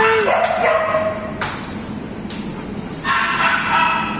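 A dog vocalizing, with short pitched calls that bend in pitch in the first second and again near the end, and two sharp knocks in between.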